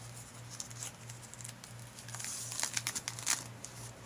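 Stiff, heavily collaged paper pages of a spiral-bound altered book crinkling and crackling as a page is turned over. The crackling is loudest in a burst from about two seconds in.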